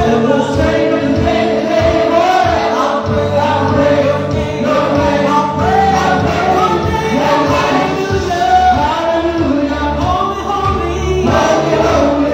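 Church worship team singing a gospel praise song together, mixed voices with instrumental accompaniment, amplified through PA speakers.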